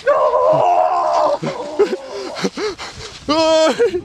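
Men yelling and shouting as they charge: a long loud cry, a few short calls, then a held yell near the end.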